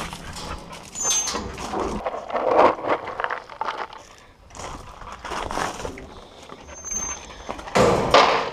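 Wire-mesh kennel gates rattling and dry dog biscuits being scooped and poured into a dog's feed bowl, as a series of irregular scrapes and clatters with a brief high squeak now and then and a sharp clatter near the end.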